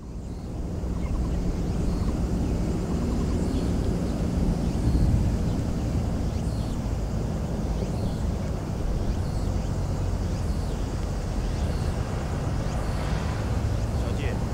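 Outdoor field ambience made up mostly of a steady low rumble, fading in from silence at the start.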